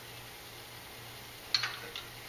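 A metal wrench clinks once against the pyrometer probe nut at the exhaust manifold about one and a half seconds in, with a smaller clink just before the end, over a faint steady hum.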